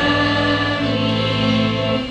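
A choir singing a hymn, many voices together in long held notes.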